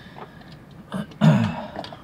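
A man coughs, clearing his throat: a short catch about a second in, then one louder cough.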